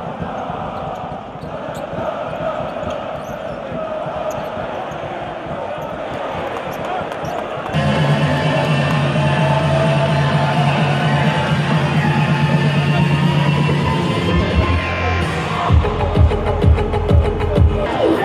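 Arena crowd noise during play. About eight seconds in it changes abruptly to louder music with a steady low note held for several seconds. Near the end a thumping beat comes in at about two beats a second.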